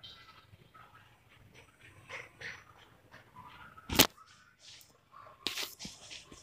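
Quiet handling sounds as soaked urad-dal vadas are squeezed by hand and set into a steel bowl, with one sharp knock about four seconds in and a few soft clicks near the end.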